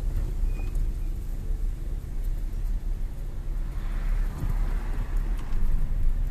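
Car interior noise while driving: a steady low engine and road rumble, with a rushing noise that swells about four seconds in and fades again.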